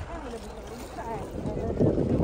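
Wind on the microphone and water washing past a moving boat on a lake, with faint voices in the background; the rush grows louder near the end.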